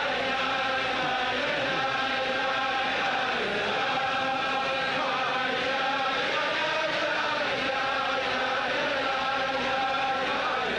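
A large crowd of men singing a Chassidic niggun together, many voices in one melody held at a steady level without breaks.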